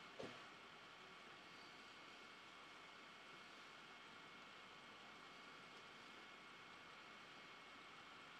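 Near silence: only a faint, steady hiss.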